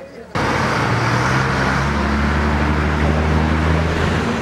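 An engine running steadily, loud and close. It starts abruptly about a third of a second in.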